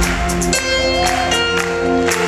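Live band music in an instrumental passage with no singing: a stage piano holding chords, with sharp percussion hits over the band.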